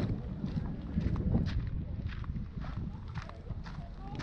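Footsteps crunching on loose gravel and stony ground at a walking pace, about two to three steps a second, over a steady low rumble of wind on the microphone.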